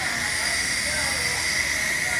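Steady hiss from dental chair equipment, with a steady high whistle-like tone in it.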